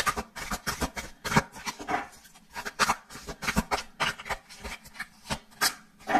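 A deck of tarot cards being shuffled by hand: a run of irregular papery strokes and taps, several a second.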